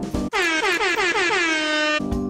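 Air horn sound effect: a fast run of loud honks, each sliding down in pitch, settling into one held blast.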